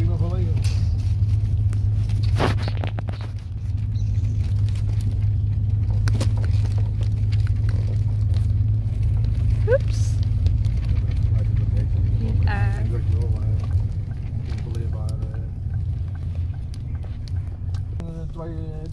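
Steady low rumble of a car's engine and tyres heard from inside the cabin while driving, dropping a little about fourteen seconds in.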